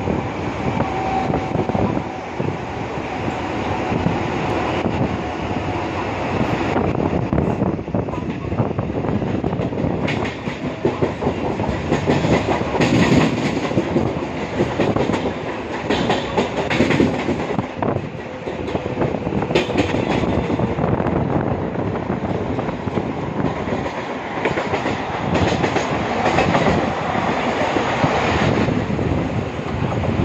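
Mumbai suburban local electric train running at speed, heard from aboard: a continuous rumble and rush of air, with the clickety-clack of the wheels over rail joints and points.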